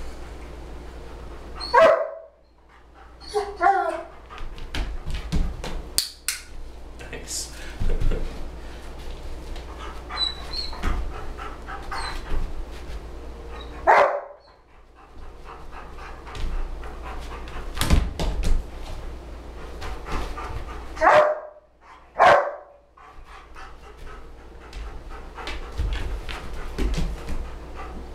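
German Shepherd Dog panting, with a few short barks, two of them close together about three-quarters of the way through. Sharp clicks of a training clicker and light knocks of paws on the books come between them.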